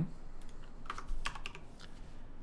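Computer keyboard being typed on: a few quick keystrokes starting about a second in.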